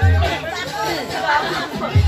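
Budots dance music whose bass beat drops out just after the start, leaving about a second and a half of voices and crowd chatter, before the beat comes back at the end.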